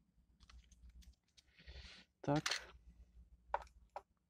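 Light clicks and a brief soft rustle of small objects handled on a workbench, ending with two sharp clicks as things are set down.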